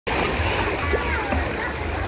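Shallow sea water splashing as children wade and run through it, over a background babble of many voices from a crowded beach and a steady low rumble.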